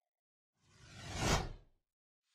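A single whoosh sound effect that swells up and peaks a little past the middle, then fades out quickly.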